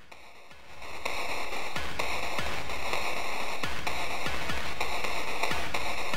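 A drum loop from KORG Gadget's Recife drum machine, heavily processed as a background "drum shadow": bit-crushed by a decimator, bandpass-filtered to the mids and soaked in reverb, so the beat comes through as a washed-out, crunchy haze with soft repeating thumps. It starts faint and swells up about a second in.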